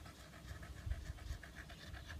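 A Staffordshire bull terrier panting faintly with its mouth open.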